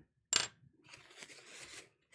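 A single short, bright clink about a third of a second in, then faint, scratchy strokes of charcoal on paper for over a second.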